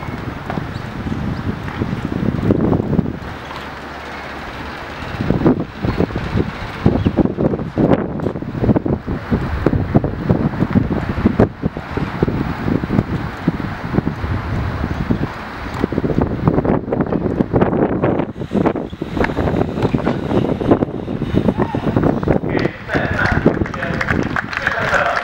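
Wind buffeting the camera microphone: a heavy, irregular rumble in gusts that come and go, easing off briefly a few seconds in and again about two-thirds of the way through.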